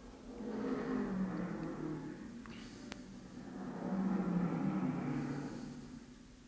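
Racing car engines passing by twice, each swelling up and fading away, on the soundtrack of archival pit-stop footage heard through a room's loudspeakers.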